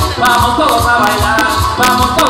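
Latin dance band music: held melodic instrument lines over a pulsing bass beat, with sharp rattling percussion strikes.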